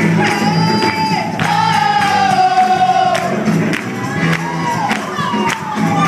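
Gospel choir singing live with band accompaniment, voices holding a long note that slides gently downward, over a steady percussion beat.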